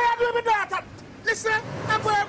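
Mostly a voice talking loudly and excitedly, with a low engine rumble from a passing motor scooter growing underneath near the end.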